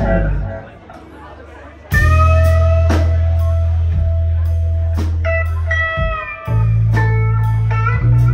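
Live band with electric guitars and drums playing a blues number. The band drops out briefly about a second in, then comes back with a loud hit and ringing electric guitar notes, and makes a shorter break near the end before crashing back in.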